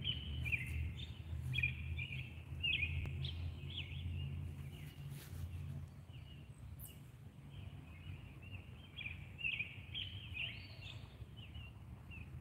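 Songbirds singing, a steady run of short high chirping notes, over a low rumble that fades about halfway through.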